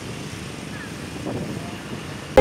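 Steady drone of street traffic, mostly motorcycle and car engines idling and moving slowly, with faint voices mixed in.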